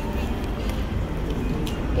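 City street background noise: a steady low traffic rumble with faint voices of passers-by.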